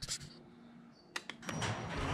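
Two short clicks of the garage door opener's wall push button being pressed a little over a second in, followed by the GDO-9V2 Gen 2 opener's motor starting up to raise the door.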